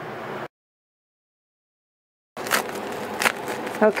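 Plastic bubble mailer crinkling and rustling as a smaller padded envelope is pulled out of it, with a couple of sharper crackles, after about two seconds of dead silence.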